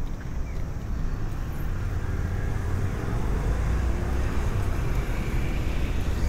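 Street traffic on a wide multi-lane road: a steady low rumble of passing vehicles that swells slightly partway through.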